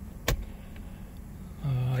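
A single sharp click, followed by a faint low background; a man starts speaking near the end.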